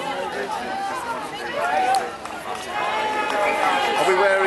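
Overlapping voices of several people chatting and calling out, no single clear speaker.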